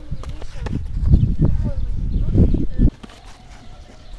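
Amateur sparring in boxing gloves: scattered glove thuds and shuffling footsteps over a heavy low rumble, which drops off sharply about three seconds in.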